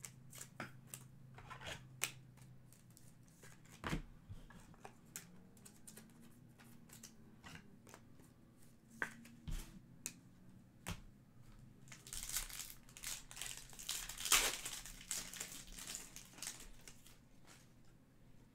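Foil trading-card pack wrapper crinkling and tearing as it is opened, densest in the last third. Before that, scattered light clicks and taps of cards being handled.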